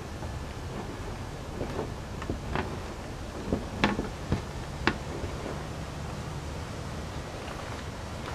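Potting soil being scraped and dug out of a large pot: a scattering of short scrapes and knocks in the first half, then only a steady low background rumble.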